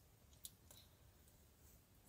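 Near silence, with one faint short click about half a second in.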